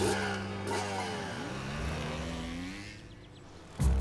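Cartoon motorbike engines revving and pulling away, their pitch rising in glides, then fading out about three seconds in. Music comes in just before the end.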